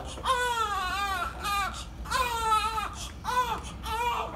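Five-day-old newborn baby crying: four cries, two of them long and two short, each rising then falling in pitch.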